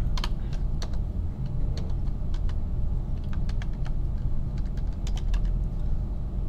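Computer keyboard keys tapped in an irregular string of sharp clicks as a word is typed, over a steady low hum.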